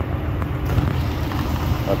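2013 Ram pickup's engine idling: a steady, even low rumble.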